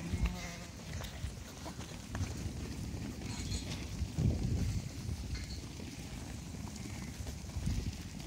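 A crowded flock of sheep pressing and shuffling along, with many hooves scuffing and trampling on the ground. A few faint bleats rise out of it.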